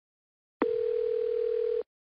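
Telephone ringing tone as heard by the caller: one steady beep that starts about half a second in and lasts just over a second. It is the sign that the call is ringing at the other end, before a voicemail greeting answers.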